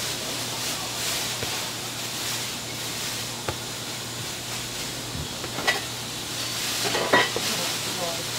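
Steady hiss of a working kitchen with a low hum under it, broken by a few light clicks and a short clatter near the end.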